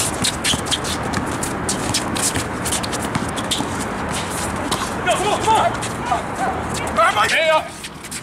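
Basketball knocks and footfalls on an outdoor court during a drive to the hoop, a rapid run of sharp thuds. About halfway through, men shout, loudest near the end.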